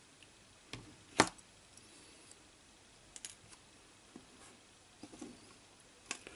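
A few sharp clicks and light rattles of alligator-clip test leads being handled and unclipped from a diode, the loudest click a little over a second in.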